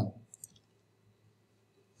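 Two quick, faint clicks a moment after the voice stops, then near silence.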